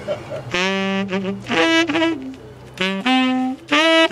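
Tenor saxophone playing a short improvised riff of changing notes, starting about half a second in, with a brief pause a little past halfway before the line picks up again.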